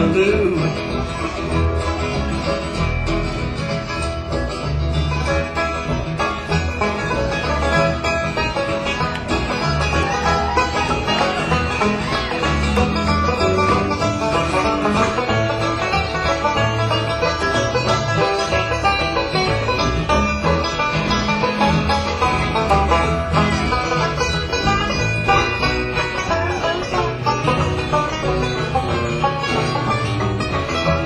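Live band playing an instrumental break with plucked strings over a steady bass line, with no singing.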